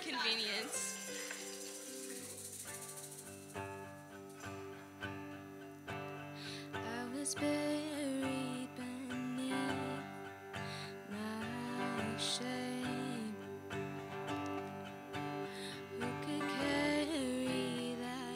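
Acoustic guitar strumming a fast song's opening chords, with light percussion keeping the beat.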